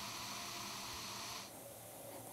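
Faint steady hiss of room tone, dropping a little about one and a half seconds in.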